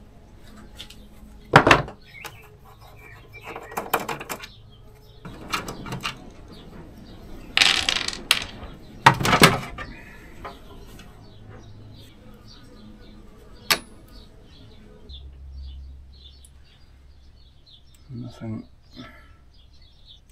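Hand disassembly of a portable power station: plastic knocks and metal clinks as the screwdriver and screws are handled and the plastic top cover is lifted off. The loudest knocks come about two, four, eight and nine seconds in, with a sharp click near fourteen seconds and lighter ticking after it.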